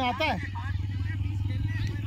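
A motor vehicle engine running with a steady low note, with a short distant shout near the start.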